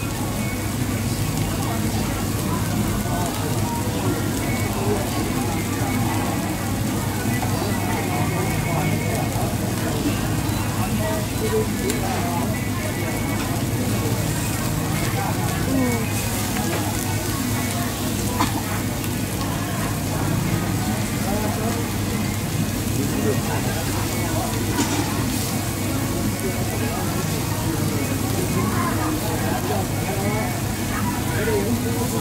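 Busy BBQ and hotpot restaurant ambience: a steady din of indistinct diners' chatter over a constant sizzling, frying hiss, with a low steady hum underneath.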